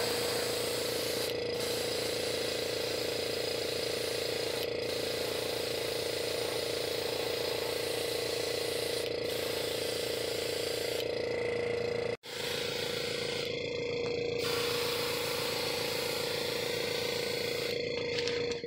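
Small airbrush compressor running with a steady hum and fast, even pulsing, under the hiss of the airbrush spraying paint. The sound breaks off for an instant about twelve seconds in, then carries on as before.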